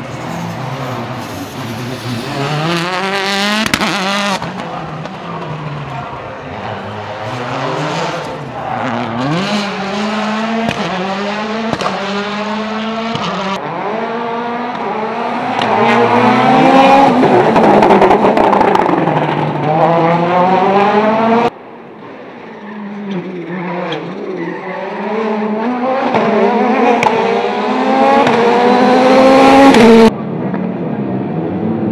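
Rally car engines revving hard and dropping away, again and again, as the cars are driven through corners and gear changes. The sound changes abruptly a few times, at the joins between shots of different cars.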